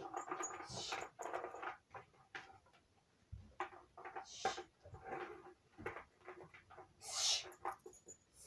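Livestock in a stable making many short, faint calls, with a shush about a second in and a louder breathy hiss near the end.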